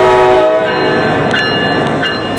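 Train horn sound effect, loud: a chord of several notes held for under a second, then giving way to higher steady tones.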